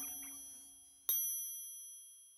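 Cartoon sound effect: the tail of a musical note dies away, then about a second in a single bell-like ding rings and fades.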